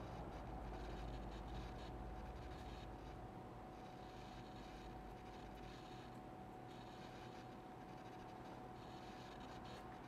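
Faint, scratchy rubbing of a cotton wool bud on a small plastic model part as weathering wash is wiped back, over a low steady room hum with a faint steady whine.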